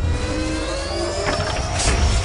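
Sound-design sting for an animated logo: a rising whoosh of upward-gliding tones over a noisy rush, ending in a heavy hit near the end.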